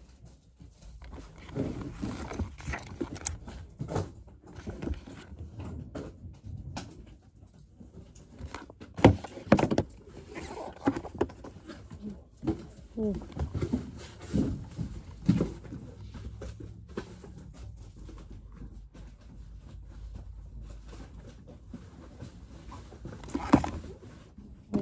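Close handling noise: rustling and irregular knocks and clicks as store merchandise is picked up and handled next to the microphone, with the loudest knocks about nine to ten seconds in.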